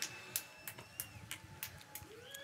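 Faint, scattered claps from a distant crowd applauding, with a thin faint whistle-like tone that dips about a second in.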